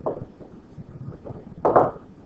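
Stylus tapping and scratching on a pen-tablet screen while a word is handwritten: a few soft knocks, with a louder short scrape or knock near the end.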